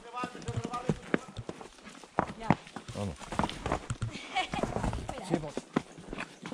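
Horses' hooves clopping irregularly on the stones of a steep, rocky forest trail as the horses walk downhill.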